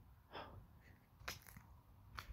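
Near silence, with a faint breath about a third of a second in and a few soft clicks a little past halfway.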